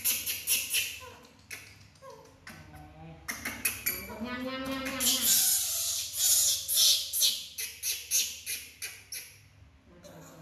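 Baby macaques sucking at milk bottles, making a quick run of wet smacking clicks that is densest past the middle. A brief voiced hum rises and falls just before the thickest clicks.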